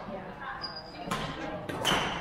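Badminton rackets striking a shuttlecock during a rally: two sharp hits, about a second in and again near the end. Brief high squeaks, typical of court shoes on the gym floor, come between them.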